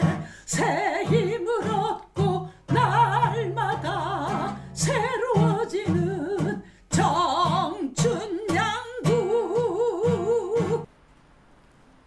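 A woman singing with strong vibrato to a strummed acoustic guitar; the song breaks off suddenly about eleven seconds in.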